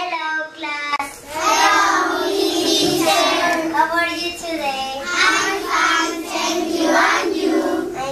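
Young children singing a song, their voices carrying on almost without a break from about a second in.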